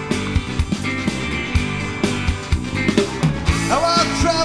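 Blues-rock band playing an instrumental passage: electric guitar over bass and drums with a steady beat. Near the end a high note slides upward.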